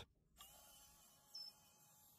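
Near silence, with only a faint steady hum and one tiny blip about one and a half seconds in.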